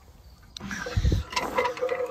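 Refractory-lined furnace lid being lifted off the furnace body: scraping and rattling handling noise with a dull knock about a second in.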